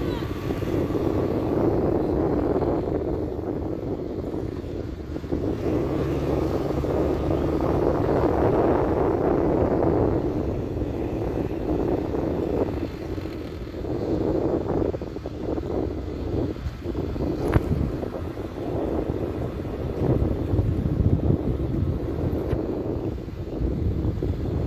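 Wind buffeting the microphone over the steady rumble of a vehicle moving along the road at a runner's pace, with one sharp click a little past the middle.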